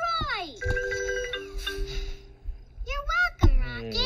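Cartoon soundtrack through a tablet's speaker: a child's cheer, then about a second and a half of electronic, ringtone-like trilling beeps, like a cartoon rocket ship's beeping voice, then more voices and a sharp click near the end.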